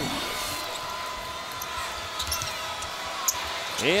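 Steady arena crowd noise with a basketball being dribbled on the hardwood court: a few dull, irregular bounces.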